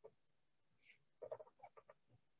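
Near silence: room tone in a pause of speech, with a faint run of a few short sounds in the background about a second in.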